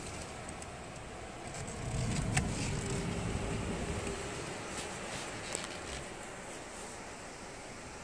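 Inside a moving vehicle with the side window open: the engine and road rumble grow louder about two seconds in, as if pulling away. There is a single click, then a thin steady whine for about two seconds.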